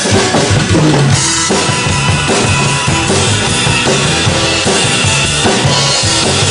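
Instrumental break in a song, with a drum kit keeping a steady beat on bass drum and snare over the accompanying music.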